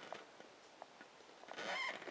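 Quiet room tone with a few faint clicks, then a short breath drawn in near the end.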